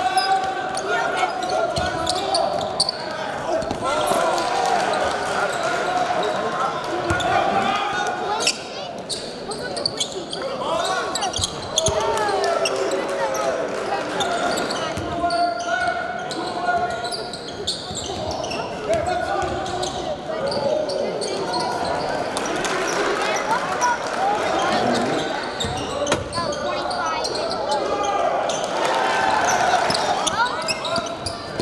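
Live game sound in a gymnasium: a crowd's voices and shouts fill the hall while a basketball is dribbled on the hardwood floor, with frequent short bounces.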